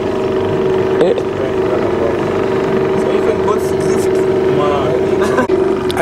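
Boat outboard motor running at a steady, even pitch while under way, over the rush of water from the wake. A few brief snatches of voices are heard.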